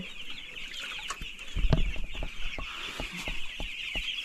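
A crowd of young broiler chicks peeping continuously in a dense high chatter. Several sharp knocks and one heavier thump a little before two seconds in come from rubber boots stepping through a footbath into the brooder.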